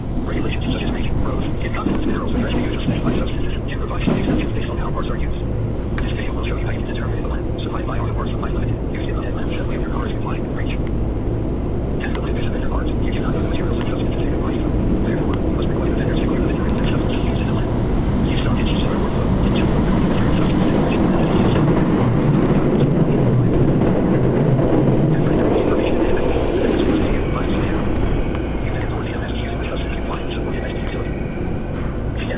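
Subway train running through a tunnel, heard from inside the car: a steady rumble of wheels and running gear with scattered clicks, growing louder about two-thirds of the way through and easing again near the end.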